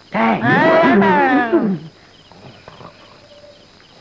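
A man's long, drawn-out groan lasting about two seconds and wavering up and down in pitch, followed by quieter background.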